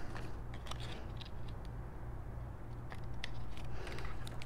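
Faint handling of paper and cardstock, with a few light scissor clicks, as a cut-out frame is pulled free from the card. A steady low hum lies underneath.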